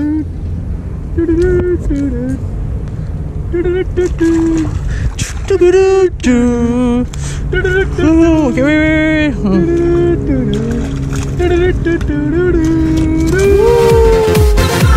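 A voice making drawn-out, pitched calls in bursts over a steady low hum.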